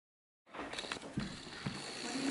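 Silence for about half a second, then room sound cuts in: people shifting about on a couch, with rustling and a couple of soft knocks.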